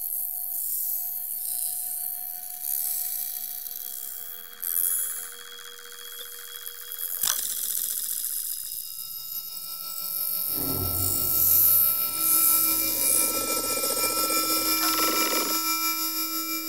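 Electroacoustic music: held electronic tones over a high hiss, broken by a sharp click about seven seconds in. About ten seconds in, a louder, denser cluster of low and middle tones enters.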